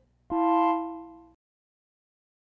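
A single keyboard chord, piano-like, struck about a third of a second in. It fades for about a second and then cuts off abruptly into silence.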